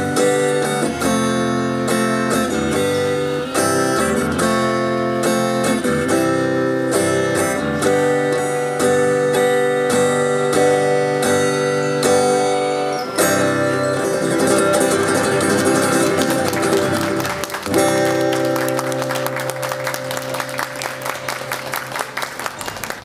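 Steel-string acoustic guitar strummed in a rhythmic instrumental outro with no voice, ending on a final chord struck about two thirds of the way in and left to ring out and fade. Audience applause begins under the dying chord near the end.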